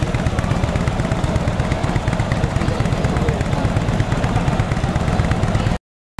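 Vintage motorcycle engine idling loudly close by, its exhaust a rapid, uneven stream of pulses. The sound cuts out briefly near the end.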